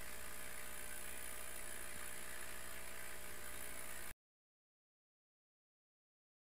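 Steady machine hum with a hiss from the LE4040 laser engraver's air assist and vacuum extraction running during a line cut. The sound cuts off abruptly about four seconds in.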